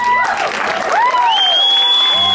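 Concert audience applauding at the end of a song, with cheers and whistles over the clapping; one long high whistle starts about one and a half seconds in and is held.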